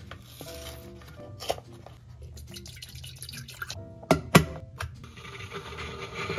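Kitchen-counter handling sounds as milk from a carton goes into an electric kettle: soft liquid and carton sounds, with two sharp clacks just after the four-second mark, the loudest sounds here.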